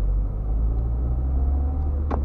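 Low, steady rumble of a car driving, heard from inside the cabin: engine and road noise.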